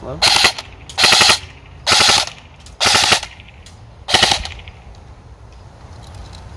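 Salient Arms GRY airsoft electric M4 (AEG) firing five short full-auto bursts over about four seconds, the gearbox cycling at a slow rate of fire on an 11.1 V LiPo that the owner finds too slow.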